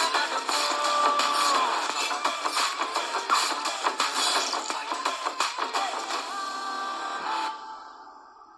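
Upbeat film song from a movie trailer: a fast, dense beat under singing and held melody lines. It fades out near the end.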